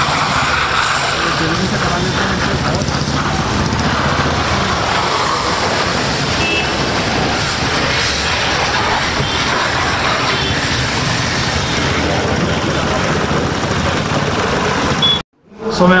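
Steady hiss of a car-wash hose jet spraying water onto a car's body panels and wheels. It cuts off abruptly near the end.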